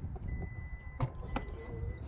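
2024 Jeep Wagoneer power liftgate being released and starting to open: two sharp latch clicks about a second in, over a thin, steady high-pitched tone.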